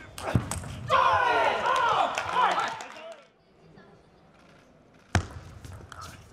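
A table tennis ball is struck twice in quick succession, then a player shouts loudly for about two seconds with the pitch rising and falling, as the point is won. After a quiet stretch there is a single sharp crack of the ball near the end.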